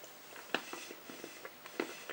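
Faint, irregular crisp snaps and crackles of a piece of dark orange chocolate being bitten and chewed, the sharpest snap near the end.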